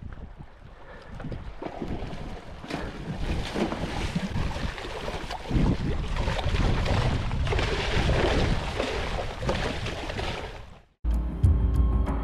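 Water splashing and churning as a hooked fish thrashes at the surface beside the boat, with wind rushing on the microphone; the splashing builds over the first few seconds. It cuts off abruptly about eleven seconds in and music starts.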